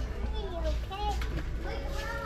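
Indistinct children's voices and chatter from other shoppers in a large store, over a steady low background hum.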